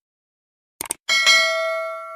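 A quick mouse click, then a bright bell ding about a second in whose several clear tones ring on and fade. This is the click-and-bell sound effect of a subscribe-button animation.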